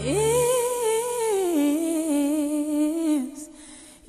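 A solo voice singing long held notes without clear words, with vibrato: it slides up into a high note, steps down to a lower held note about one and a half seconds in, and fades out near the end. A low accompanying drone stops about half a second in.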